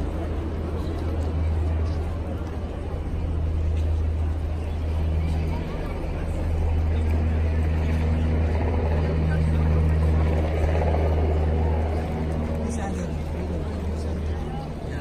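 Busy street ambience: many people talking at once in a crowd, over a steady low hum of engines from traffic.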